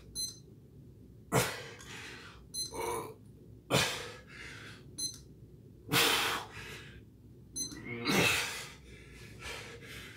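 A man breathing hard during push-ups: four loud, forceful exhalations about every two seconds. A short, high electronic beep sounds once per repetition, just before each breath.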